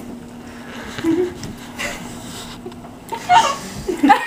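Soft laughter and chuckles in three short bursts over a steady low hum.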